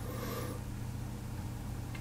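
Steady low background hum with no other clear sound, and a faint, brief soft sound near the start.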